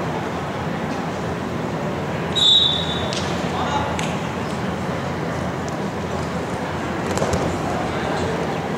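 Referee's whistle: one short, high blast about two and a half seconds in, signalling the restart of the bout from the referee's position, over the steady background of a gym with scattered voices.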